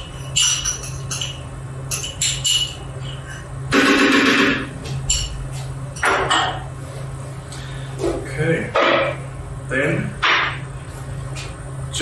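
A utensil scraping and tapping tahini out of a small container into a food processor, with scattered kitchen clatter and knocks and one louder noisy rush lasting about a second, four seconds in. A steady low hum of kitchen equipment runs underneath.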